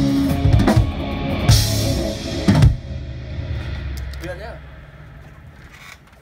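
Live rock band with electric guitars, bass and drum kit closing a song: three heavy drum hits with cymbal crashes, the last about halfway through. After that the instruments ring out and fade away.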